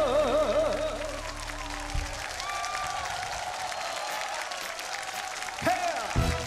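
A trot singer's last held note, wavering in a wide vibrato over the live band's closing chord, with the band cutting off about two seconds in. Then the crowd applauds and cheers, and a new band intro starts near the end.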